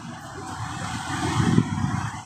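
A car going by on the street: a steady low rumble of tyres and engine that grows a little louder in the second half.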